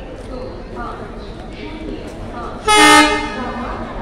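An arriving train's horn giving one short, loud blast of under half a second, about three seconds in, over the steady chatter of a waiting crowd.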